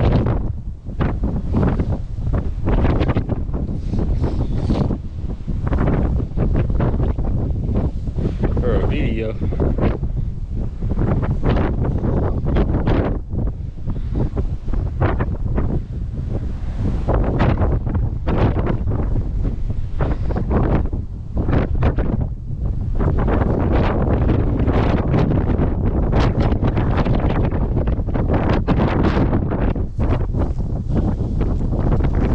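Strong wind buffeting the camera microphone, a loud, low noise that rises and falls unevenly with the gusts.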